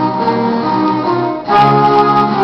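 Middle school concert band of second-year players playing sustained wind chords, with a brief dip and then a louder new chord entering about a second and a half in.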